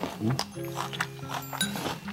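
Background music with held notes, over several crisp crunches of someone chewing crunchy kimjang kimchi (fermented napa cabbage) close to a clip-on microphone.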